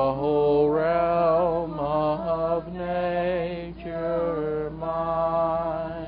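A man's voice singing a slow hymn in long held notes of about a second each, each with a slight waver. Short breaks fall between the phrases, and the voice fades about the last second.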